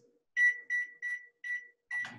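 Microwave oven keypad beeping five times, short high beeps a little under half a second apart, as the buttons are pressed to set a heating time of a minute and thirty seconds.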